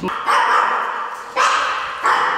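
A small spitz-type dog (Pomeranian type) barking twice, each bark trailing off in an echo.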